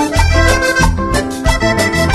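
Live Latin dance band music led by a button accordion, playing held melody notes over a pulsing bass line and percussion. It is an instrumental passage with no singing.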